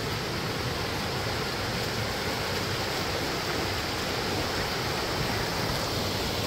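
Steady rushing of a small waterfall stream pouring over rocks.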